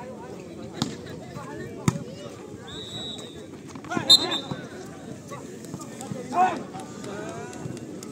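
Volleyball rally over steady crowd chatter: a few sharp hits of the ball, the loudest about four seconds in at a jump at the net, then a burst of shouting from the spectators a couple of seconds later.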